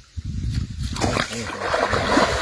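A young chimpanzee scuffing through dry leaves, then splashing as it wades into a shallow stream. The splashing starts about a second in and is the loudest sound.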